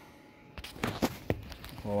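A few short, sharp clicks and knocks of something being handled, about four in a second, over a faint noise.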